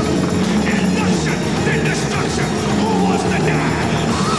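Tank engine running steadily as the tracked vehicle drives in, over crowd cheering and shouting.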